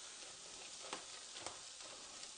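Diced vegetables sizzling in a frying pan, a steady faint hiss, with a couple of light clicks near the middle.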